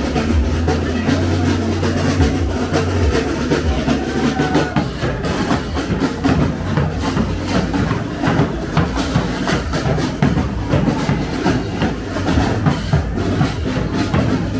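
Street drumline playing: bass drums, snare and tenor drums beating a dense, fast pattern with crash cymbals clashing over it. A steady low bass tone sits under the first few seconds.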